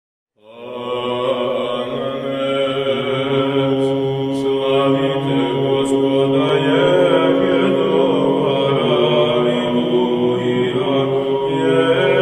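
Choir chanting in slow, held chords over a low drone, entering about half a second in and staying loud.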